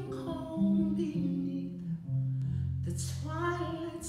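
Electric bass playing slow, sustained low notes under a woman's singing voice in a jazz ballad; her held note fades in the first second and she sings again about three seconds in.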